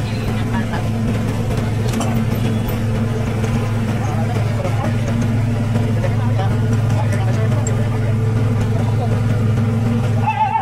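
Fishing boat's engine machinery running steadily with a low, even drone while a bluefin tuna is hoisted out of the hold, with faint voices in the background.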